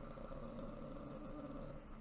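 A man's low, drawn-out hum of hesitation while he thinks.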